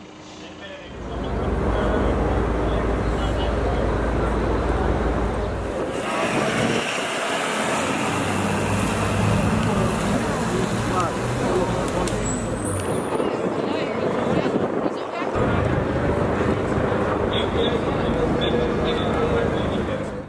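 Loud street noise of vehicles and traffic with voices mixed in, changing abruptly about six and fifteen seconds in. A deep engine rumble is strongest in the first few seconds.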